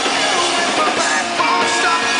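Live rock band playing: a male lead singer's voice over electric guitars, heard loud from the crowd.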